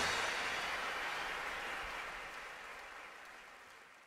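Large theatre audience applauding, fading out steadily to almost nothing by the end.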